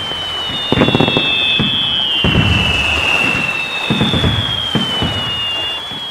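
Fireworks: several long, overlapping whistles that slowly fall in pitch, with booming bursts and crackle between them.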